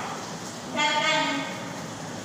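A voice calls out one long, drawn-out syllable about a second in, held for under a second with a slight fall in pitch, in the sing-song way letters of the Hindi alphabet are recited in class.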